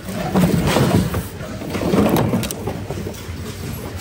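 Rummaging through a bin of mixed secondhand goods: hard and plastic items sliding, scraping and knocking against each other as they are shifted by hand.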